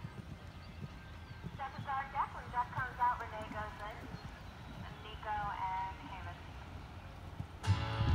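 Faint, distant voices in two short stretches over a steady low rumble.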